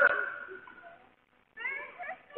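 A drawn-out, wavering vocal call, loudest at the start and fading within about half a second, with another call starting near the end.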